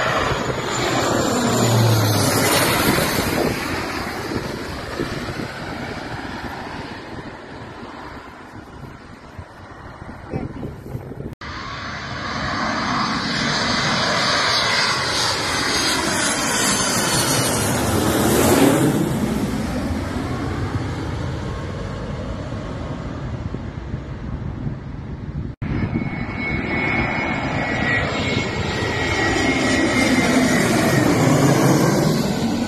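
Airliners on approach passing low overhead, one after another. A twin-engine turboprop swells to a peak about two seconds in and fades away. After a sudden cut, a jet airliner builds to a louder peak just past the middle and fades. After another cut, a second jet is heard approaching near the end.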